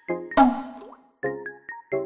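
Light background music of short, separate pitched notes, with one short, sudden sound effect about half a second in that is the loudest moment.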